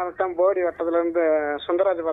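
Speech: a person talking continuously, the voice thin and narrow as if heard over a telephone line.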